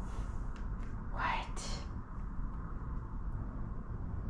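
A woman whispering under her breath, breathy and hushed, over a low steady room hum.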